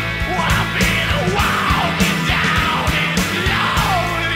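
Loud punk-blues rock music with drums, bass and a yelled vocal, with sliding notes that fall in pitch about once a second over a steady beat.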